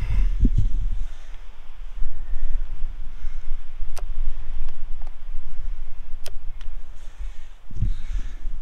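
Wind rumbling on the microphone, heaviest in the first second, with a few light clicks as a hand works the rotating film back of a Mamiya RB67 medium-format camera.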